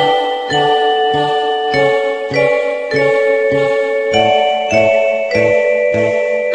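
An electronic MIDI rendition of a string quartet composition: several sustained synthesized notes move in steps over a steady low beat a little under twice a second.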